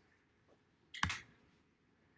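A single short click about a second in, against otherwise quiet room tone.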